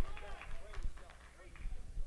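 Faint, scattered voices of a church congregation calling out responses, with low thuds underneath.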